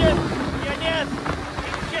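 Sport motorcycle riding along with wind rushing over the microphone; the engine note drops right at the start as the throttle is eased, then stays low under the wind noise.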